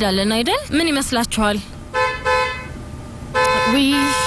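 Speech, then a steady pitched tone like a horn or buzzer sounds twice: first for about half a second, then again about a second later for over a second, with a voice over its start.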